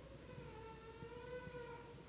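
A faint held tone with a few overtones, its pitch drifting slightly up and back down, over quiet room tone.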